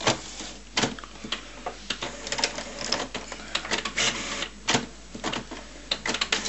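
HP Photosmart C4485 all-in-one printer mechanism working: a rapid, irregular run of clicks and clacks as its ink-cartridge carriage moves, at the start of a scan job.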